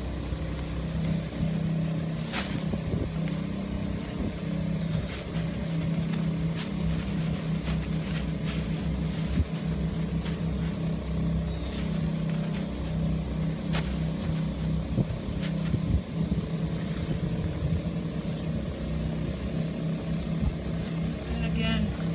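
A steady low motor drone runs throughout, with a few sharp clicks and rustles as the tent panel's fabric, straps and hooks are handled.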